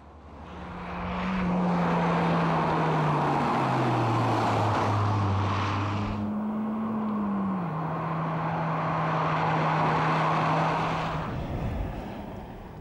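A car engine running as the car drives along a road, its note sliding down in pitch in steps, jumping higher about six seconds in and then dropping again, over a steady rush of tyre and wind noise. The sound fades near the end.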